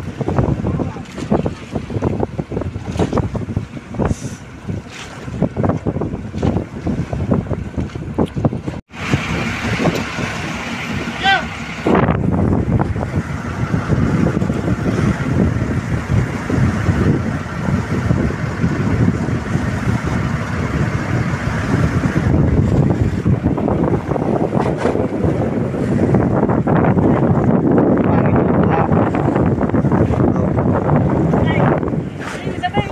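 Motorized outrigger fishing boat under way: the engine's low running drone mixed with wind buffeting the microphone and scattered knocks on deck. After a break about nine seconds in, the drone is louder and steadier.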